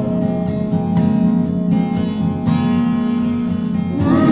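Slowed-down, reverb-heavy acoustic guitar from a folk song, strummed chords ringing out in a short instrumental gap between sung lines, with fresh strums about half a second, one second, a second and a half and two and a half seconds in.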